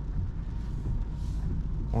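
Steady low drone inside the cabin of a 2024 Opel Corsa under way: engine and tyres rolling on a wet road.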